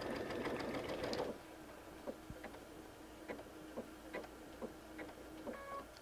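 Brother DreamWeaver XE sewing machine stitching a decorative pattern at speed for about a second, then running quietly with a few light clicks as it nears the marked end point where it stops on its own. A short electronic beep comes near the end.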